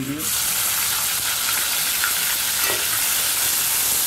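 Chopped tomato dropped into hot oil with cumin seeds in an aluminium pot, starting a steady sizzle just after the start, with a spatula stirring through it.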